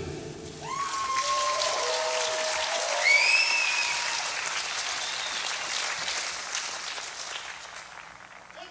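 Audience applauding and cheering with whoops as a song ends. The applause swells about a second in, peaks around three seconds in, then dies away.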